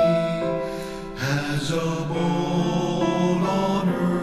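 A man singing a slow sacred hymn in long held notes over piano and orchestral accompaniment.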